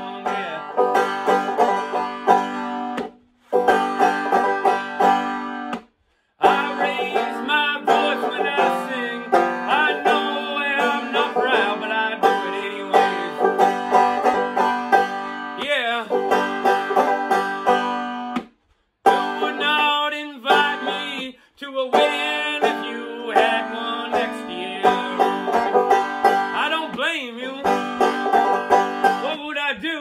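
Banjo played in a steady, driving rhythm. The sound cuts out completely for brief moments a few times.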